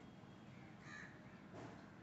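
Near silence: room tone, with one faint, short animal call about a second in.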